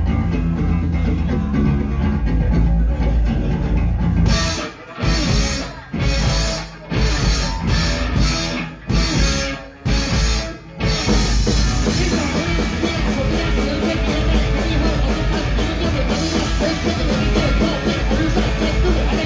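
Live punk rock band playing: electric guitars, bass and a drum kit. About four seconds in, the band plays a series of stop-start hits with short gaps between them. From about eleven seconds it settles into continuous full playing with a fast, even cymbal beat.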